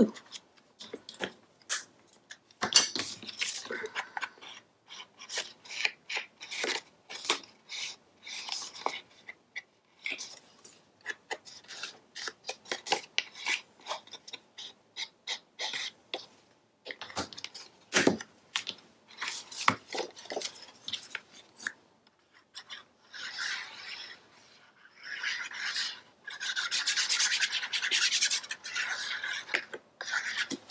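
An ink pad rubbed along the edges of designer paper, with paper being handled: many short scraping rubs and taps, then longer stretches of steady rubbing near the end.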